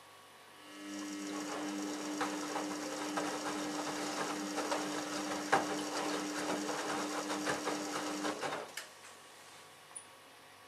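Samsung Ecobubble WF1804WPU front-loading washing machine turning its drum in a wash tumble: a steady motor whine with the wet laundry sloshing and knocking inside. It starts just under a second in and stops about a second before the end.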